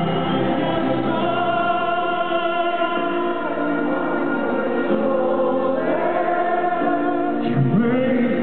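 Live ballad with band and strings, many voices singing long held lines together. Near the end a single voice glides up. The recording is thin and muffled, with no treble.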